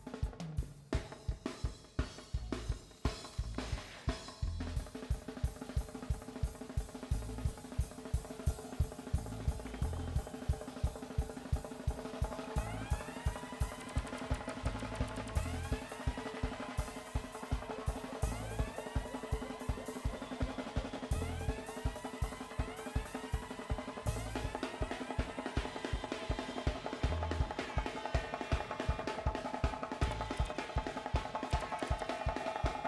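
Live drum kit solo: fast, even strokes on snare, toms and bass drum with cymbals. From about twelve seconds in, repeated pitched sweeps sound along with the strokes over a steady held tone.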